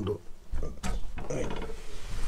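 Old wooden plank door being pushed open: a knock, then a short rapid clicking creak from its hinges or latch, over low rumble from movement.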